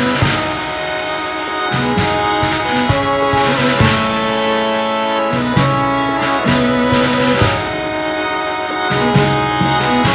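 Harmonium playing sustained reed chords that shift every second or two, with a violin alongside.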